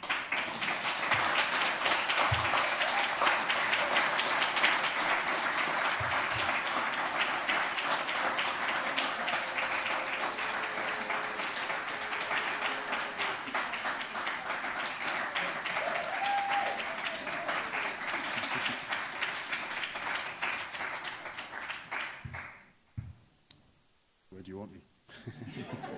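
Audience applauding: a long round of clapping that starts at once and dies away near the end.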